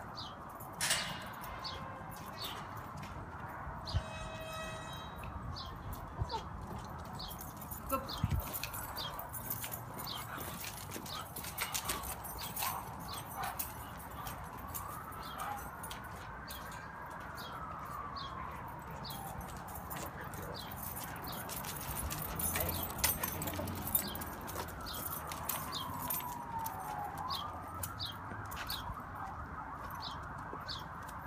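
Outdoor ambience: a small bird chirping over and over at an even pace, with a faint wail that rises and falls slowly a few times and scattered light knocks.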